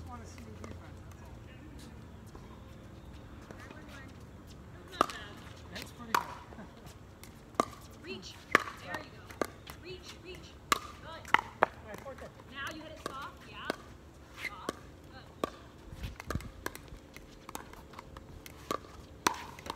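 Pickleball rally: a string of sharp pops as paddles strike the hollow plastic ball, starting about five seconds in and coming roughly once a second, sometimes closer together. Faint voices can be heard between the shots.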